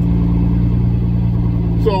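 Truck engine running with a steady low drone, heard from inside the cab while the truck drives.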